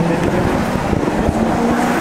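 Close road traffic: a motor vehicle's engine running nearby over tyre and road noise, its note rising about a second in as it pulls away or speeds up.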